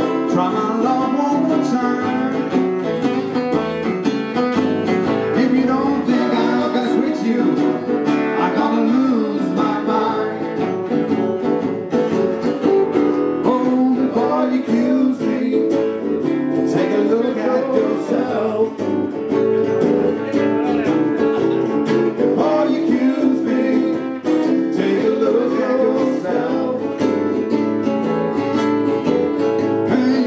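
Two acoustic guitars playing a blues instrumental break: one strums the rhythm while the other plays a lead with bent notes.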